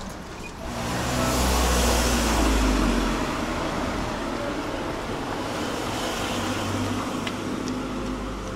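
A car driving by close on a narrow street: steady tyre and engine noise with a low rumble, loudest a second or two in, then holding steady.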